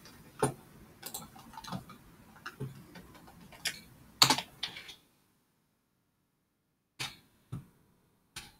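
Irregular sharp clicks and taps of typing on a computer keyboard, heard through a video-call microphone. About five seconds in the sound cuts to dead silence as the call's audio gates off, and one or two single clicks come back near the end.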